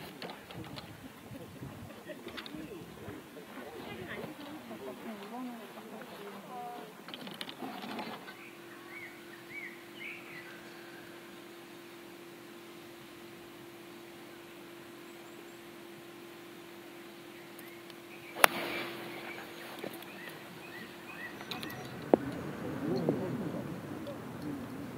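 A single crisp click of a golf iron striking the ball, about three-quarters of the way in and the loudest sound. Before it there is murmuring at first, then birds chirping over a faint steady hum. A smaller tick follows a few seconds after the strike, then murmuring again.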